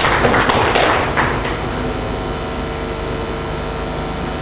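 A brief flurry of knocks and taps in the first second and a half, over a steady room hum that carries on after it.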